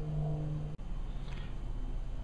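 A steady low hum with a few faint held tones that cuts off abruptly less than a second in, leaving faint background noise.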